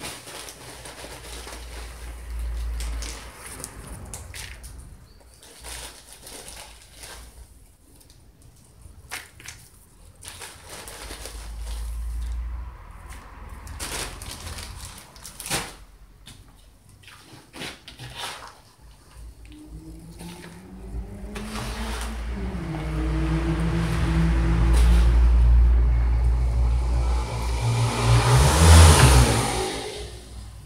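Rustling and knocking of plastic plant pots, orchid leaves and bark potting mix being handled, with low rumbles on the microphone. In the last ten seconds an engine hum swells, shifting in pitch, and fades near the end.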